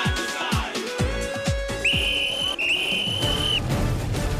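A whistle blown in two blasts about two seconds in, a short one then a longer one at a high, steady pitch, signalling the start of a tug-of-war pull. Background music with a regular beat runs underneath.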